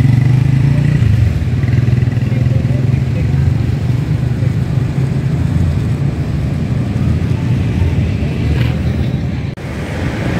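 Steady low rumble of street traffic, motorcycle engines running. The sound drops out for a moment near the end.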